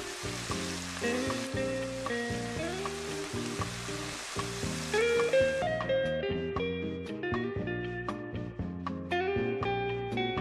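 Lobster meat, carrots and shallots sautéing in butter in a skillet, a steady frying sizzle that cuts off suddenly a little over halfway through. Background music with plucked, guitar-like notes plays throughout.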